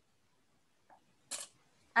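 Near silence on a video call, broken by one short, hissy click a little over a second in, with a voice just starting as it ends.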